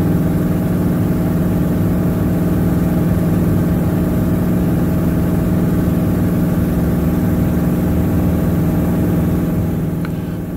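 Piper Super Cub's piston engine and propeller running steadily in flight, heard from inside the cockpit as an even, unchanging drone.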